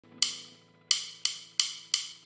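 Percussive count-in clicks: five sharp clicks, the first two spaced twice as far apart as the last three, which come about three a second, setting the tempo for the backing track.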